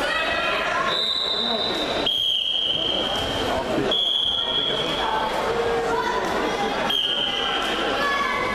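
Four long, steady referee whistle blasts at slightly different pitches, each about a second to a second and a half long, over continuous crowd chatter and voices in a sports hall.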